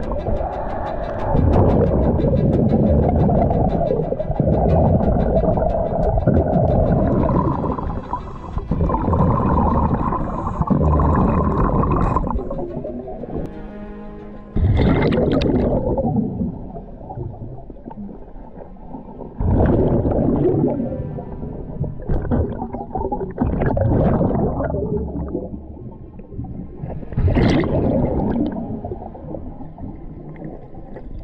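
Scuba diver breathing through a regulator underwater, with rushes of exhaled bubbles about every four to five seconds.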